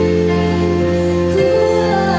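A live church worship band with keyboard, electric bass and electric guitar plays a slow song in long held chords, with a singer at the microphone.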